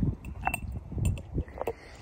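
A small glass dish clinking a few times against a stone slab as a dog noses and licks at it, with low knocks underneath.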